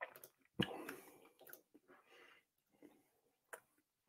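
Faint mouth sounds of a sip of rye whiskey being held and tasted: soft scattered tongue and lip clicks, with one short louder sound about half a second in.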